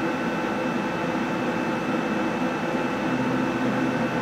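Water chiller for a CO2 laser tube running with a steady, kind of loud hum: several steady tones over an even noise.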